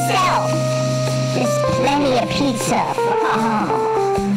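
Electronic keyboard jam: held synth notes over a steady low bass note, with a voice vocalizing over the music without clear words.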